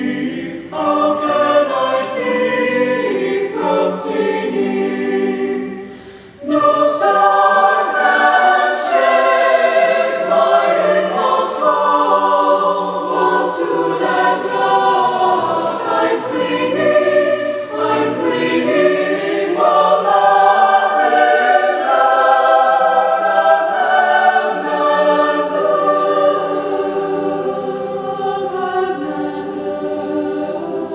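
High school choir singing, with a short break about six seconds in before a louder passage resumes.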